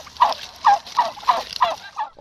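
A flock of Kandıra turkeys calling: a run of short, falling calls, about three a second, over a steady hiss.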